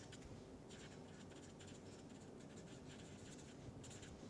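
Felt-tip marker writing on paper: faint, short scratchy strokes of the marker tip over low room hiss.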